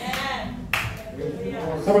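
A man's voice over a microphone, with hand clapping mixed in.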